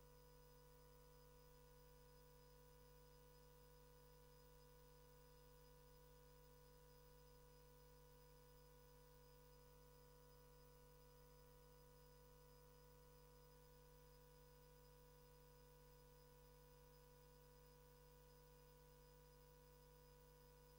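Near silence: room tone with a faint, steady hum made of several unchanging tones.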